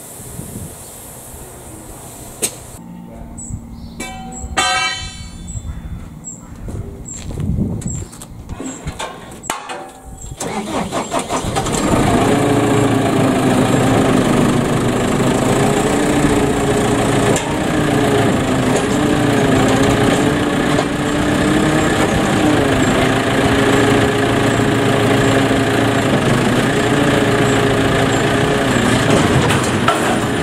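Scattered metal knocks and clicks, then about ten seconds in a diesel engine, most likely the JCB telehandler's, starts and runs loudly, its revs rising and falling slightly as the boom lifts the ram into the baler.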